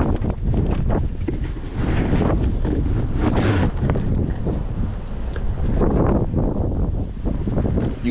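Loud wind noise on the microphone, with cardboard shoe boxes being handled close by, giving short scuffs and rustles.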